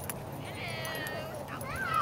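A dog whining high-pitched during rough play with another dog, a drawn-out whine followed near the end by a short rising cry.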